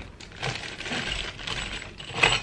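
A small plastic bag of metal screws being torn open and handled: the plastic crinkles and the screws clink against each other in small irregular clicks.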